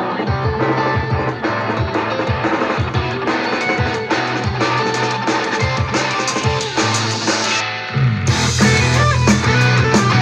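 Instrumental rock with electric guitar, drum kit and a deep Dingwall electric bass line. About eight seconds in the band gets louder and fuller, the bass heavier.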